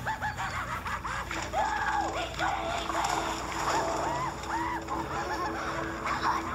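Animated film soundtrack heard in a cinema: a high, squeaky cartoon voice making wordless sounds that rise and fall.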